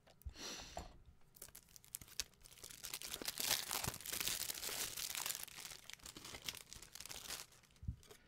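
Plastic shrink-wrap crinkling and tearing as it is peeled off a CD case: a few scattered crackles at first, then a dense, continuous crackling from about two and a half seconds in until shortly before the end.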